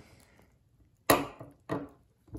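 Folding knives set down on a wooden tabletop: a sharp knock about a second in, then a softer one shortly after.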